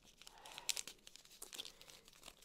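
A small clear plastic zip baggie being handled and pried open: faint crinkling and rustling of thin plastic, with a few light clicks.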